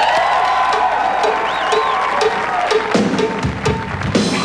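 Hard rock band opening a song live: a sustained guitar chord with a light ticking beat about twice a second and audience cheering. The fuller band, with bass and drums, comes in about three seconds in.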